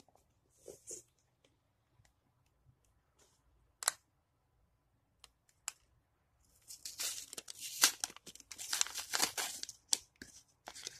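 A handmade paper surprise packet being opened by hand. There are a few light paper clicks and one sharper snap about four seconds in. From about seven seconds in come dense paper crinkling and tearing as the packet is pulled open.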